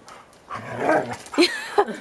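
Airedale terriers vocalising as they play-fight. A rough, noisy stretch starts about half a second in, then two short, sharp yelps or barks come near the end.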